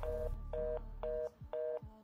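Telephone busy signal in the handset: four short, even beeps of a two-pitch tone, about two a second, meaning the line is engaged or the call cannot go through.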